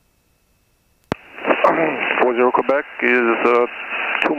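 Near silence, then about a second in a sharp click as a radio transmission keys up, followed by a voice over the aircraft radio, thin-sounding and cut off above the voice range.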